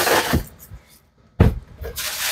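Newspaper rustling and crinkling as it is stuffed into a cardboard shipping box as packing, fading out about half a second in, then a single sharp knock of the box about one and a half seconds in.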